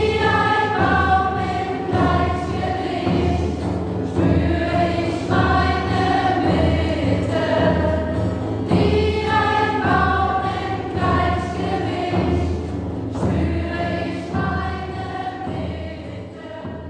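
A group of mostly female voices sings a mantra chant together in long, sustained phrases, accompanied by acoustic guitar and a steady frame-drum beat.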